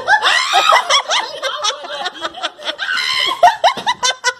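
Women laughing hard in high-pitched fits of giggles.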